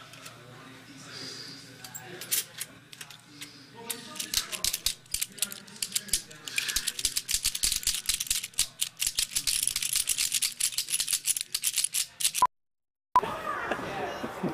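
Hard plastic toy figures clattering and rattling against each other in rapid, irregular clicks. Sparse at first, the clatter becomes dense and louder about six seconds in, then cuts off abruptly near the end.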